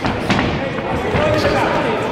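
Kickboxing bout: dull thuds of punches or kicks landing, two close together at the start, over voices shouting from ringside in an echoing hall.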